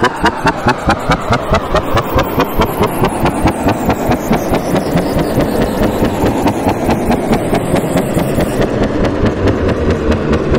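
A drill-producer transition sound effect: a dense, evenly pulsing noise at about four to five pulses a second, with a high tone gliding slowly downward through the middle.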